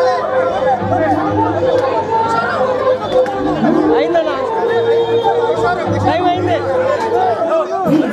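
Crowd of people talking over one another, with music playing behind.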